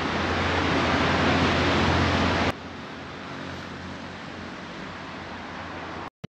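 Outdoor background noise: a steady rushing hiss with no clear source. About two and a half seconds in it drops abruptly to a quieter level.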